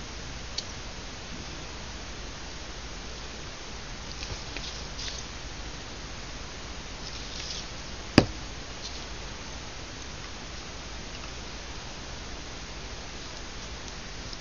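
Quiet handling of paper and lace trim, a few faint rustles over a steady hiss, with one sharp click about eight seconds in as a plastic glue bottle is set down on the wooden tabletop.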